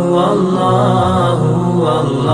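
Vocal dhikr chant repeating "Allahu" in long held, sung notes.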